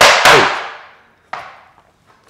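Tap shoes striking a wooden tap board at the end of a short tap combination: two loud, sharp strikes in quick succession at the start, ringing as they fade, then one light tap about a second later.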